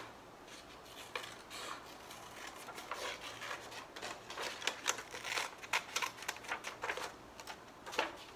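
Scissors cutting out a shape from paper: a run of short, irregular snips, coming faster in the second half.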